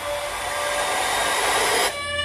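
Trailer sound effect: a rushing swell of noise that builds over about two seconds and cuts off abruptly near the end, over a faint held musical chord.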